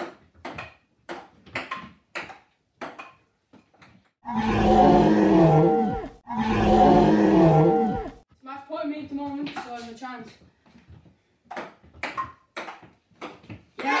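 Table-tennis ball clicking off the bats and table in a rally, about two hits a second. It is broken by two long, loud, roar-like calls, each over a second long with falling pitch, then a few more ball clicks near the end.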